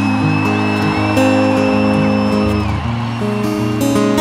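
Live band playing the intro of a pop song, with long held keyboard chords and acoustic guitar over a large crowd's noise. A long high whistle is held for a few seconds in the first part.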